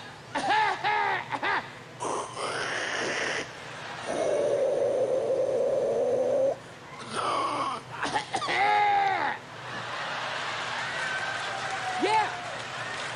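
A stand-up comedian's voice making exaggerated, drawn-out coughing and hacking noises, acting out someone coughing without covering their mouth, with one long strained hack held for a couple of seconds in the middle. Near the end it gives way to an audience's laughter.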